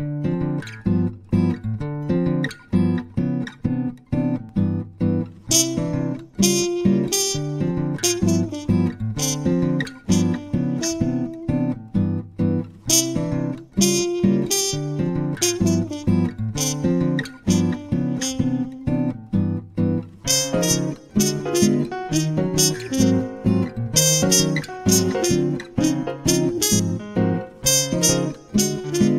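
Background music led by acoustic guitar, played with a steady rhythm of plucked and strummed chords, growing busier about two-thirds of the way through.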